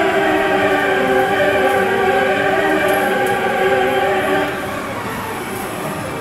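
Medal-pusher machine's game music playing held chord-like tones while its jackpot wheel spins, the tones easing off about four and a half seconds in, over steady arcade din.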